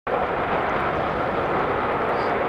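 Steady jet engine noise from an Airbus A380-861 with Engine Alliance GP7200 turbofans as it taxis: an even rushing sound with no distinct tones.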